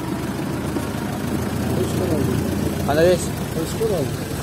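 A vehicle engine idling close by: a steady low rumble. A short voice call cuts in about three seconds in.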